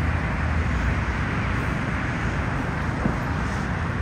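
Steady outdoor background noise: a low rumble with a hiss over it, typical of road traffic, with no single event standing out.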